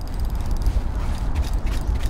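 Low, uneven rumble of wind buffeting the microphone outdoors on open water, with a faint steady hiss above it.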